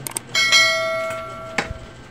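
Subscribe-button sound effect: a couple of mouse clicks, then a bright bell chime that rings for about a second before another click near the end.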